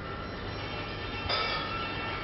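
Live acoustic instrumental music: ringing notes fade away, then a new held note starts about a second in.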